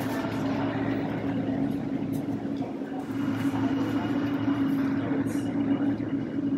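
Steady machinery hum with a constant low drone in a long concrete tunnel, with a few scattered light clicks over it.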